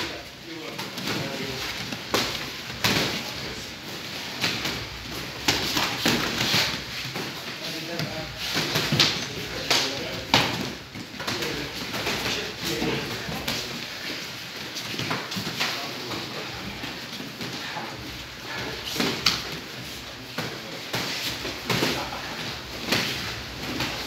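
Boxing-glove punches landing with irregular slaps and thuds as several pairs spar at once, mixed with foot shuffles on the mats and indistinct voices in a small room.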